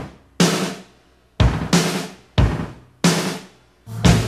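Rock band intro: a string of separate drum-and-chord hits, about one a second, each left to ring and die away, until the full band comes in at the end.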